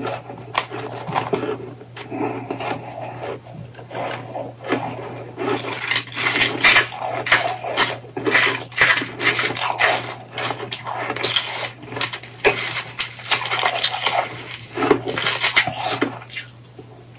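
Powdery shaved ice crunching softly as it is chewed, then from about five seconds in a metal fork scraping and digging into a packed dome of powdery ice: a dense run of crisp, gritty crunches and scrapes. A faint steady hum lies underneath.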